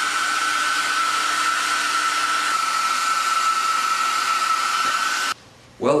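Electric blow dryer running steadily: a rush of air with a high motor whine that dips slightly in pitch about two and a half seconds in, then cuts off suddenly near the end.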